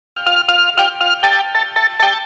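Music: a bright melody of quick, evenly paced notes, about four a second, beginning a moment in.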